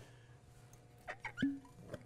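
Faint handling sounds of a small glass sauce bottle being picked up and uncapped: a few light clicks and taps, with a brief short tone about one and a half seconds in.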